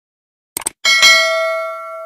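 Two quick clicks, then a bright bell chime that rings out and fades over about a second and a half.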